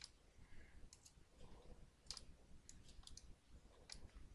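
Faint, scattered clicks of a computer mouse, about half a dozen spread over a few seconds, over near-silent room tone.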